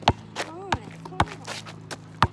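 Basketball being dribbled, bouncing sharply about four times at an uneven pace.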